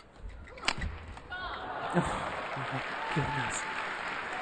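A badminton racket strikes the shuttlecock with a single sharp crack about two-thirds of a second in, among low thuds. Crowd noise and short shouting voices then build.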